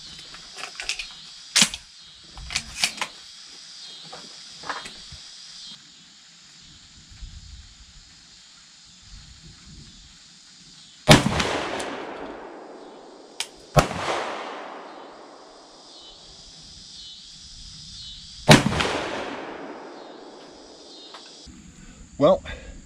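Two 12-gauge slug shots from a semi-automatic AK-pattern shotgun, about seven seconds apart, each echoing and dying away over a couple of seconds. A single sharp crack falls between them, and a few small clicks come near the start. Insects keep up a steady high hiss.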